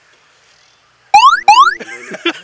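Two quick, loud rising 'whoop' tones, each starting with a click and sweeping upward in pitch, a comedy sound effect added in editing. They come about a second in, a third of a second apart.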